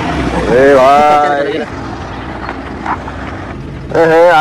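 A person's drawn-out vocal sound over a loud low rumble and hiss, which drop away about a second and a half in, leaving a steadier, quieter hum.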